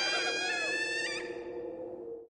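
A long, high-pitched tone with a brief bend in pitch about a second in, over a low held drone, both fading toward the end.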